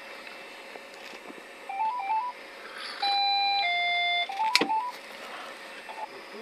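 A short electronic melody of pure beeping tones over a phone line: quick stepped notes, then two longer notes stepping down, then the quick notes again, with a sharp click in between.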